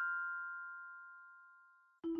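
Chord of bell-like chime notes from a logo jingle ringing out and fading away steadily to nothing over about two seconds.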